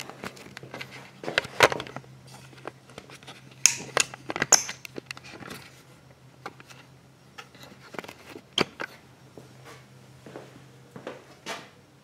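Scattered light clicks and knocks from hands handling the camera and tools, over a faint steady low hum.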